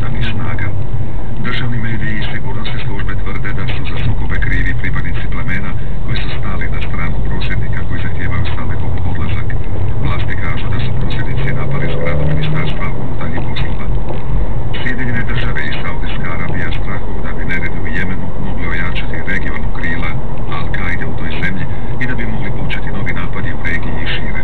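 Loud, steady engine and road noise inside a moving car, heard from the cabin, with a muffled radio news broadcast underneath.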